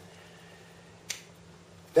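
Quiet room tone with a faint steady hum, and a single short, sharp click a little past halfway through.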